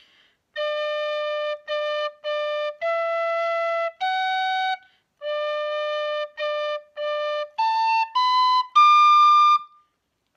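Tin whistle in D playing a slow reel phrase twice: a held low D, two short Ds, then E and F sharp; then three Ds again rising through A and B to a held high D. The high D is the loudest note, blown a little harder.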